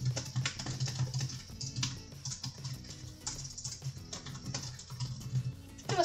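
Typing on a computer keyboard: a quick, uneven run of keystrokes as a sentence is typed, with background music underneath.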